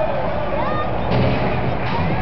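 Loud, rough rumbling arena noise during a robot combat match, with a sudden harsher burst of noise about a second in.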